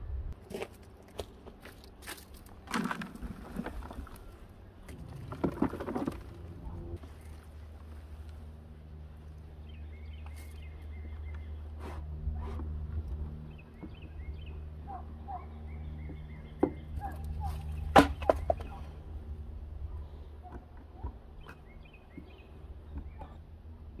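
Dry peat moss being poured and scooped into the plastic solids bin of an Airhead composting toilet: two longer rustling pours a few seconds in, then scattered light taps and clicks against the bin, with one sharper knock about eighteen seconds in.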